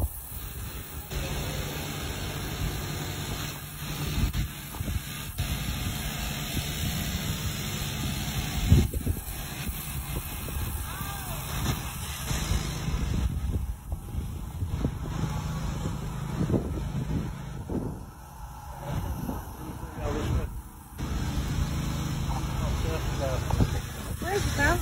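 Outdoor street ambience while walking: road traffic passing, with a low rumble of wind on the phone's microphone. A sharp knock about nine seconds in is the loudest moment.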